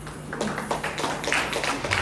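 Audience clapping that starts about half a second in and builds into applause at the end of a Bharatanatyam dance.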